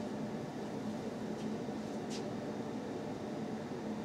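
Steady room tone: a low hum with an even hiss, and one faint click about two seconds in.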